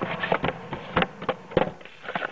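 A cardboard phone box being opened by hand and the bubble-wrapped phone lifted out. The sound is a run of irregular sharp clicks, scrapes and rustles from the cardboard and the plastic wrap.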